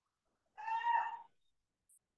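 A single short, high-pitched call lasting under a second, starting about half a second in, against a near-silent room.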